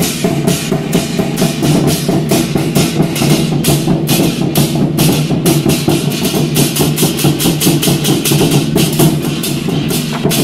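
A Taiwanese war-drum troupe plays large red barrel drums in a fast, driving rhythm, with pairs of hand cymbals crashing several times a second over the drumming.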